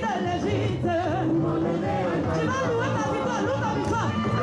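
Gospel praise song performed live: voices singing over a steady instrumental accompaniment.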